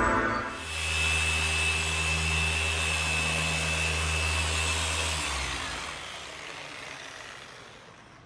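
A machine running steadily: a low hum with a thin high whine over a hiss, stopping about five seconds in, leaving faint room noise.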